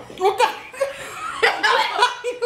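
A group of girls and women laughing together, with a few words mixed in.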